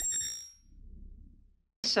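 An editing chime sound effect, a bright ding with several high ringing tones, fading out within the first half-second. A faint low sound follows before speech resumes.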